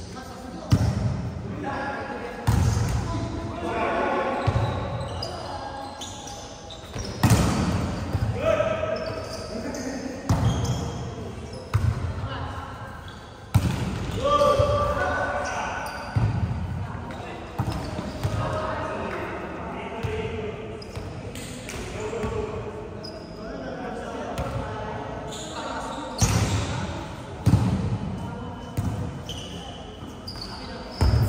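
Volleyball being struck by hands and forearms during a rally, a series of sharp slaps and thuds that echo in a large gym hall, amid players' shouts and calls.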